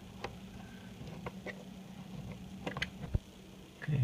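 Scattered light clicks and taps of a screwdriver blade and small faucet parts as rubber O-rings are pried off a faucet body, with a duller knock about three seconds in.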